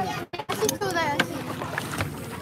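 People's voices talking and calling, broken by a brief dropout to silence about a third of a second in.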